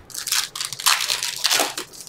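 Trading-card pack wrappers being handled and crinkled: several short, irregular rustles.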